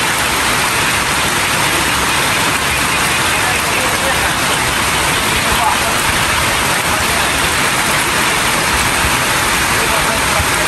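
Steady rain falling on fields and standing water, a dense, even hiss that does not let up.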